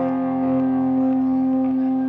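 Live rock band with electric guitars holding a sustained chord that rings out steadily, with faint sliding tones over it.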